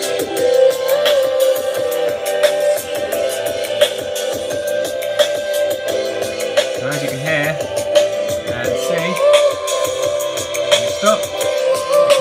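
A song with vocals playing through the opened JBL Flip 3 Bluetooth speaker. One of its two drivers is held in place and then lifted out of the housing, breaking the sealed enclosure that its passive radiators need for bass, which leaves the speaker sounding awful.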